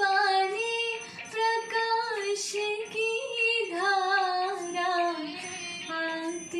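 A woman singing a devotional song, holding long notes that bend smoothly up and down in pitch.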